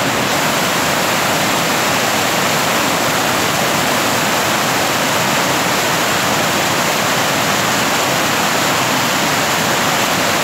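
Creek in flood, brown water rushing in churning rapids and pouring across a submerged road crossing: a loud, steady rush of water.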